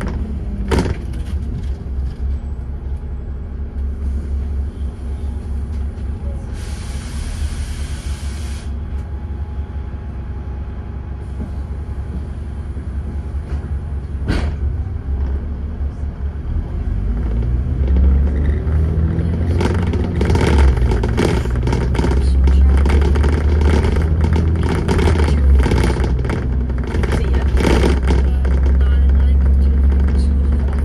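Dennis Trident 2 double-decker bus's diesel engine running under way, heard from the upper deck, with body rattles and a couple of sharp knocks. A hiss lasts about two seconds around seven seconds in, and from about eighteen seconds the engine pulls harder and louder as the bus accelerates.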